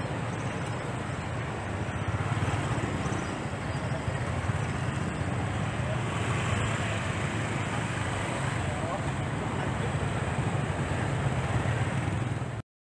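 Steady outdoor din of road traffic on a bridge over a swollen, fast-flowing river, with a continuous low rumble.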